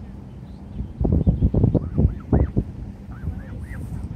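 Canada geese giving short, repeated honking calls. A burst of loud low rumbling on the microphone runs from about one second to two and a half seconds in.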